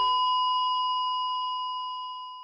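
The song's final note: a single high electronic keyboard tone held and slowly fading away, with the lower backing notes cutting off just after the start.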